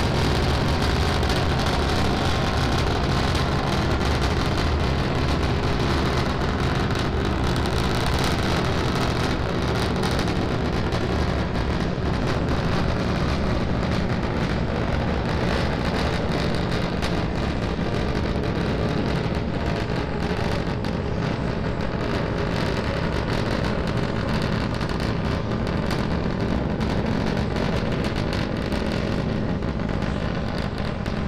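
Steady, crackling roar of a Starship prototype's three Raptor engines firing during ascent. The highest frequencies thin out a little over the last ten seconds.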